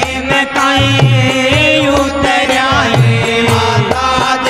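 Live Rajasthani devotional folk music: a man's singing voice over a held drone and a steady, repeating drum rhythm, with a hand-held frame drum among the percussion.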